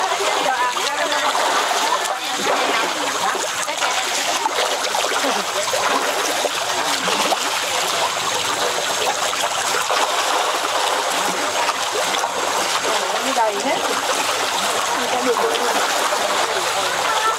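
A school of cá he barbs splashing at the water's surface as they feed on pellets thrown to them: a steady mass of small splashes.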